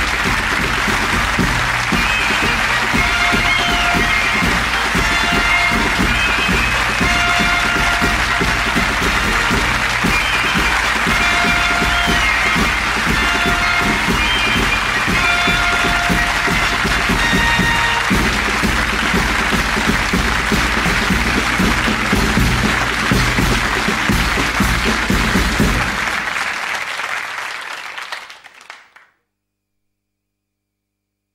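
Sitcom closing theme music played over studio audience applause, fading out to silence a few seconds before the end.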